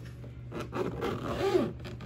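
Unboxing handling noise: a scraping, zip-like pull that starts about half a second in and lasts just over a second, with squeaky gliding pitches near its loudest point.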